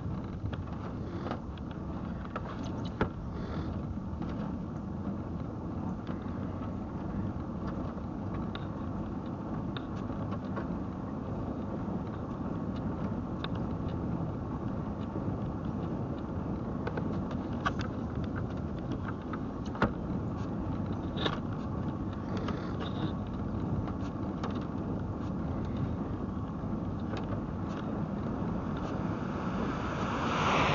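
Steady rolling rumble of a human-powered velomobile on asphalt, picked up through its fibreglass body shell, with scattered light clicks and rattles. Just before the end a car passes the other way with a short rushing whoosh.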